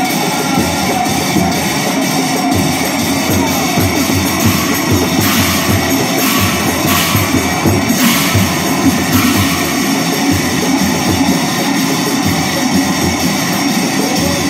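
Nagara naam ensemble playing: large nagara drums beaten in a fast, even rhythm under the continuous clash of large brass hand cymbals. The cymbals swell louder in the middle stretch.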